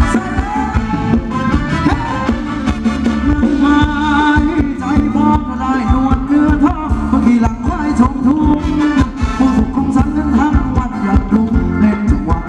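Thai ramwong dance music from a live band, loud, with a steady beat under a melody line.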